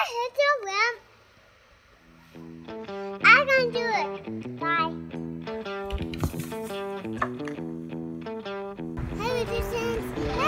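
A young child talking, then background music with steady repeating notes starting about two seconds in, the child's voice heard over it. Low rumbling noise comes in near the end.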